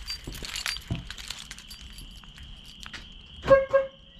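Keys jingling on a key fob, then a Ford F-250's horn gives two short chirps in quick succession near the end as the remote is pressed, showing the key fob works.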